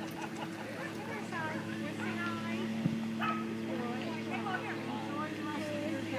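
Dogs barking at a distance with faint, indistinct voices, over a steady low hum.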